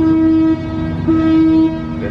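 A horn sounding two steady blasts of about half a second each, one at the start and another about a second in, over a fainter steady hum.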